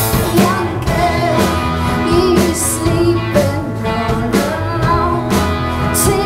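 Rock band playing live: electric guitars, electric bass and drum kit with cymbal hits keeping a steady beat.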